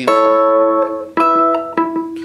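Electric guitar (Fender Telecaster) played clean: a chord struck at the start rings for about a second, then a second chord is struck just past halfway and left ringing.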